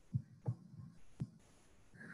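Quiet room tone with three brief soft taps, spaced unevenly, the last one about a second in and sharper, made while lines are drawn on a screen.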